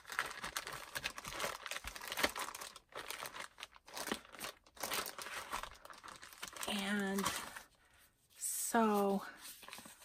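Clear plastic zip-top bag crinkling and rustling as it is pulled open and a stack of papers and fabric is slid out of it and handled, with two brief murmured words late on.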